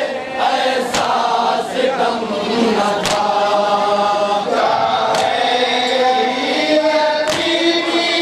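Group of men chanting a nauha, a Shia mourning lament, in unison through a microphone and PA. Sharp chest-beating slaps of matam cut through about every two seconds, four times.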